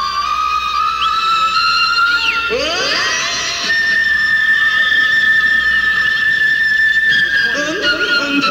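Concert flute playing solo on a live concert recording. Short melodic notes give way, about three seconds in, to a flurry of swooping glides, then one long high note held for about four seconds.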